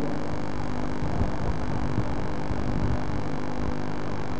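Steady electrical mains hum with a hiss underneath, unchanging throughout.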